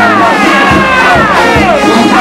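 Brass band playing a second-line groove with a bass drum beat about every three-quarters of a second, under a crowd cheering and shouting.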